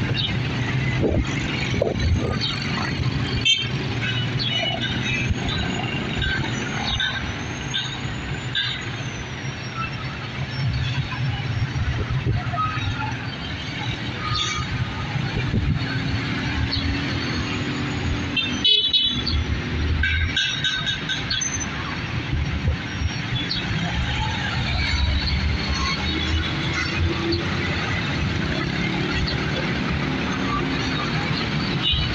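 Busy street traffic at an intersection: motorcycles, motorized tricycles and jeepneys running and passing, with occasional horn toots. A few high wavering tones sound in the first third and again a little past the middle.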